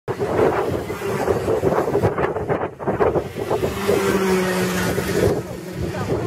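Racing kart engines running as karts pass on the circuit, with wind buffeting the microphone. A steady engine note holds for a second or two in the middle.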